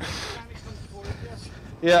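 A brief rushing hiss at the start, then low background noise, then a man shouting "yeah" near the end.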